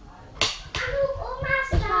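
A sharp knock about half a second in, then a high-pitched voice calling out and a greeting, 'Hallo', near the end.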